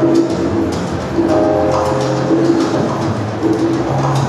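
Salsa music playing over loudspeakers for a dance routine: held low notes that recur every second or so over steady percussion clicks.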